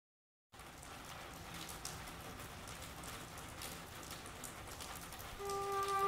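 Steady rain falling on pavement, an even patter with scattered sharper drop ticks, starting about half a second in. Near the end, long held string notes of the song's introduction come in over the rain.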